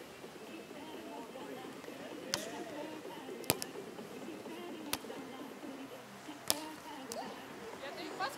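A beach volleyball being struck by players' hands and forearms during a rally: four sharp hits about a second to a second and a half apart, the second the loudest.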